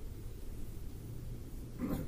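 A pause in speech: only a low, steady background hum from the recording.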